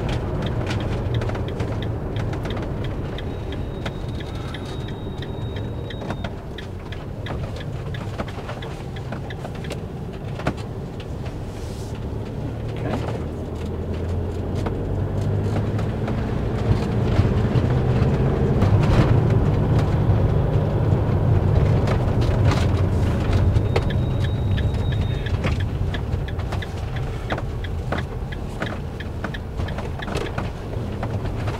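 Motorhome driving along a country road, heard from inside the cab: a steady engine and tyre rumble that grows louder in the middle of the stretch, with small knocks and rattles throughout.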